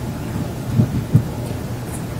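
Steady low rumbling room noise of a lecture hall heard through the microphone, with two dull low thumps a little under and a little over a second in.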